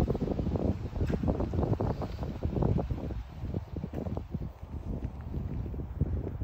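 Wind buffeting the phone's microphone: an uneven, fluttering low rumble.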